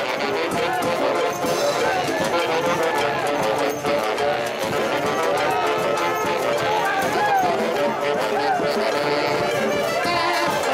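A brass band playing festive music, with the voices of a crowd over it.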